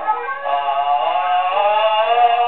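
A male music-hall singer holds a sung note with a slight waver, from a 1914 acoustic-era 78 rpm disc played on a horn gramophone. There is nothing above about 4 kHz.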